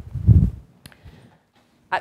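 Low, muffled rumble of handling noise on a clip-on microphone as a closed umbrella is lifted, followed by a single faint click.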